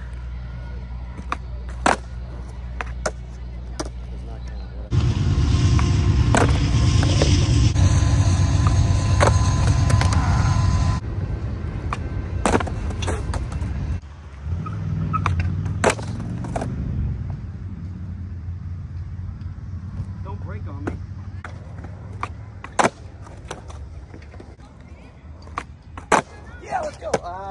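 Skateboard wheels rolling on concrete, with sharp clacks of the deck popping and slapping down several times over repeated tries at a trick off a concrete ledge. The rolling is loudest for several seconds in the first half and again briefly past the middle.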